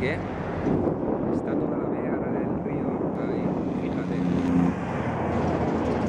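Road traffic passing close by on a highway, one vehicle's engine loudest about four to five seconds in, with wind on the microphone.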